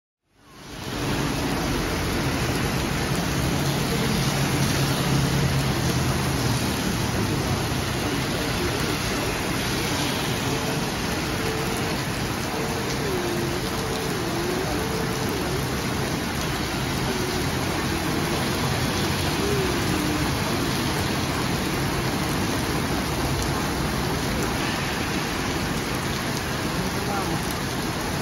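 Heavy tropical rain pouring onto a wet road and pavement: a loud, steady, dense hiss that fades in over the first second.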